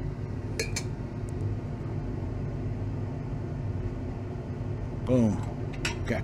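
Two light clinks of lab glassware about half a second in, over a steady low hum.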